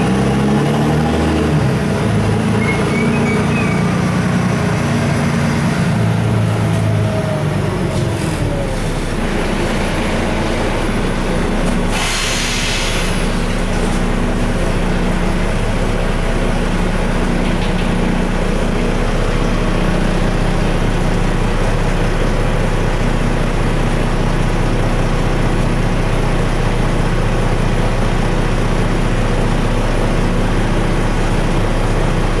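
Cabin sound of a LiAZ 6213.20 articulated city bus under way: the engine and drivetrain run steadily under road noise, with a falling whine in the first several seconds. A short hiss comes about twelve seconds in.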